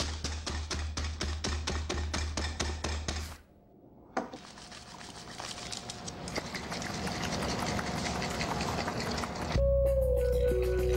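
Music with a fast, even beat of about five or six clicks a second that cuts off about three and a half seconds in. After a brief lull and a single click, a rush of chocolate milk pouring and splashing swells steadily louder. Near the end a sustained music chord with a deep bass comes in.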